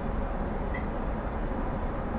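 Steady cabin noise of a Boeing 777-200ER airliner in cruise flight: an even low rumble and rush of engine and airflow noise.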